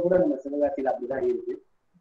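A man's voice speaking in Tamil, stopping about a second and a half in.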